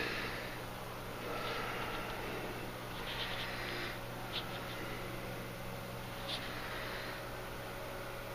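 Quiet room tone: a low steady hum, with faint rustling and two small clicks.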